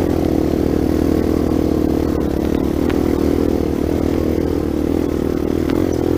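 Dirt bike engine running at a steady, low speed while the bike rolls along a rough dirt trail, heard from on board, with a few light clicks from the bike over bumps.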